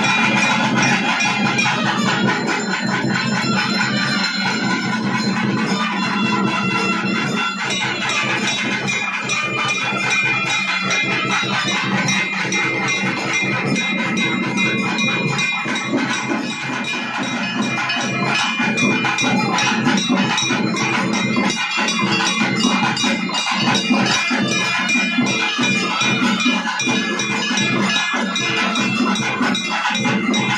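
Temple festival drum ensemble (melam) playing a fast, steady, driving beat, with metallic ringing over the drums.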